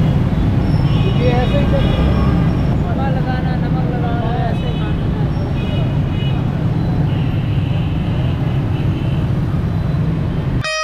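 Busy city street: a steady low rumble of passing traffic, with voices of people nearby mixed in.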